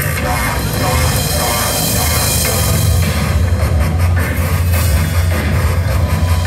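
Loud live band music with a heavy, steady bass, heard from within the crowd.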